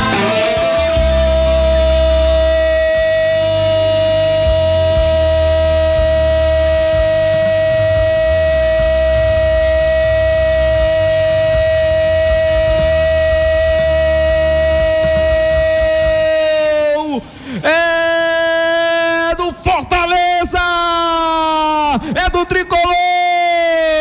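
A sports narrator's long drawn-out goal cry, held on one pitch for about 17 seconds. It then breaks into a run of shorter shouts that each fall in pitch. Music plays underneath.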